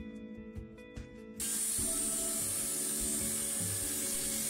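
Soft background music, then about a second and a half in a handheld electric circular saw cutting through a wooden plank comes in suddenly as a steady hiss-like whir, with the music going on faintly underneath.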